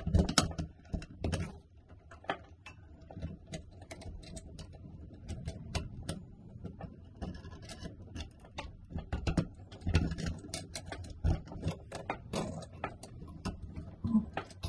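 Handling noise from tucking electrical wires and lever wire connectors into a wall box behind a metal mounting plate and fitting a brass light-fixture canopy to it: a run of small irregular clicks, rattles and taps, with a few louder knocks near the start and later on.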